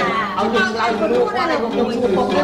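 Several people's voices talking over one another.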